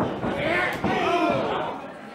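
A sharp smack of a strike in a pro wrestling ring about three-quarters of a second in, with spectators shouting loudly around it.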